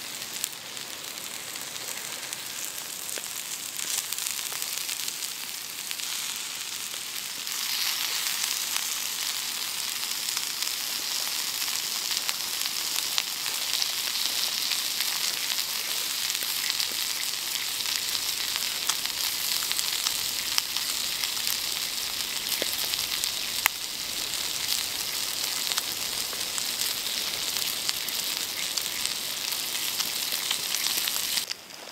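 Bacon frying on a hot stone over a campfire: a steady fat sizzle with a few sharp pops. The sizzle grows louder about seven seconds in.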